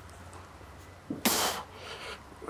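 A shot-putter's sharp, forceful exhale as he drives the shot out: a sudden hissing burst lasting about half a second, a little after one second in.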